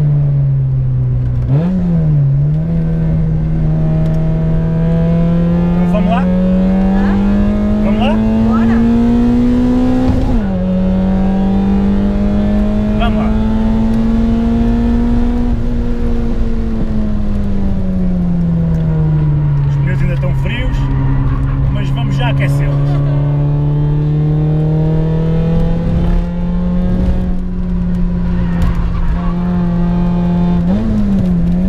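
Citroën Saxo Cup race car's engine heard from inside the cabin at speed on track. Its pitch climbs under acceleration and drops sharply twice at gear changes, about two seconds in and about ten seconds in. Around the middle the revs fall away over a few seconds, then the engine pulls steadily again.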